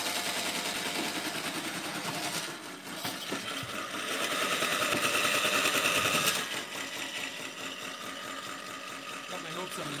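Swardman Electra battery-electric reel mower running over grass, its spinning cutting reel making a fast, steady clatter that grows louder for a couple of seconds in the middle. Its reel was bent when it was run into a sidewalk, and it is uncertain whether it is normally this loud.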